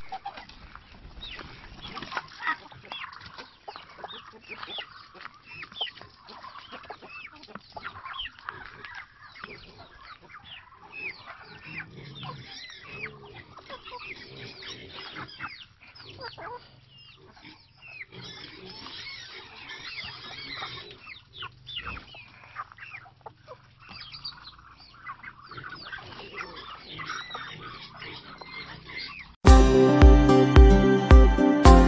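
A free-range backyard flock of chickens clucking, many short calls overlapping throughout. Music comes in suddenly just before the end.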